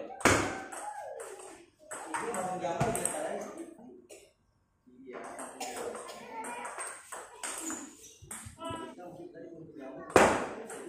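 Table tennis ball being struck with paddles and bouncing on the table in a rally, with a sharp loud hit just after the start. Voices run underneath.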